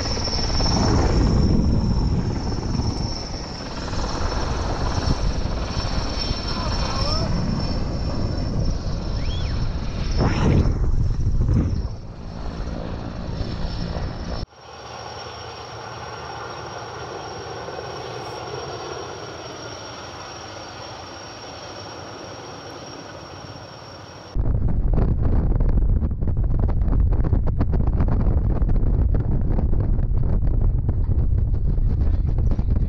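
Helicopter rotor noise mixed with wind buffeting the microphone. About halfway through, the sound cuts abruptly to a quieter, steadier stretch. Near the end it cuts back to loud, gusty wind buffeting on the microphone.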